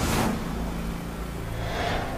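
Movie-trailer sound design: a sudden whoosh hit at the start that dies away over about half a second, a low held drone underneath, and a rising whoosh just before the end.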